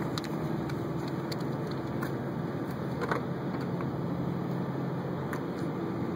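Steady low hum of a motor vehicle's engine running, which fades about five seconds in. A few light clicks sound over it.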